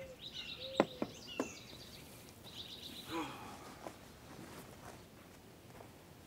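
Faint rural outdoor ambience: small birds chirping in short high trills. There are two sharp clicks about a second in, and a brief low call a little past the middle.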